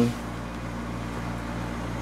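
Steady low electrical hum with an even hiss, the constant background noise of room ventilation or equipment.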